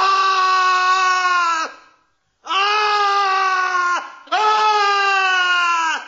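A man screaming in horror, three long high screams in a row with short breaths between, each dropping in pitch as it breaks off.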